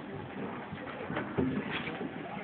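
Indistinct low voices and murmuring in a large hall, with a short low vocal sound about one and a half seconds in.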